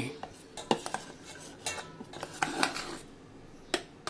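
Steel spoon scraping and clinking against a stainless steel grinder jar and steel bowl while scooping out thick ground urad dal paste: a few scattered scrapes and knocks, with one sharp clink near the end.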